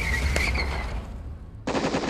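Edited outro sound effects: a low vehicle rumble with a high held tone, then, about a second and a half in, a sudden rapid burst of gunfire sound effects.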